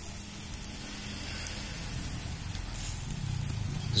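Chicken sizzling and faintly crackling as it grills over an open wood-charcoal fire, under a low steady hum that grows slightly louder near the end.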